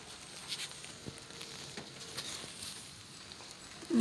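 Light rain falling on potted garden plants, a steady fine hiss with scattered faint drop ticks.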